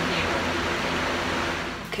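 Electric room fan running with a steady rushing hum, which breaks off just before the end.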